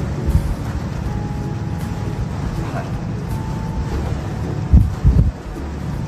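Steady low rumble of background noise, with two dull, heavy thumps in quick succession near the end.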